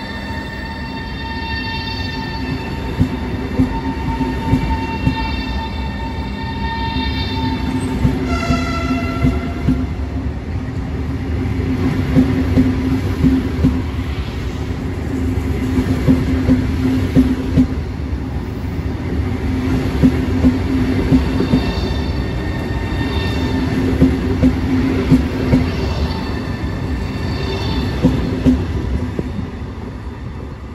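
Frecciarossa ETR600 high-speed electric trainset passing close alongside the platform: a steady electric hum and whine, with the wheels clicking over the rail joints in regular pairs as each bogie goes by. About eight seconds in, a brief high tone steps down in pitch.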